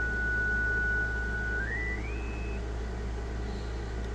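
Receiver audio from a Yaesu FT-891 HF transceiver on the 80-metre band: the steady whistle of a carrier beating in the receiver, which steps up in pitch as the dial is tuned upward and is gone a little over halfway through as it leaves the passband. Steady band noise and hum run underneath.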